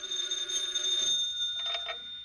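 Telephone bell ringing, one continuous ring that tapers off near the end.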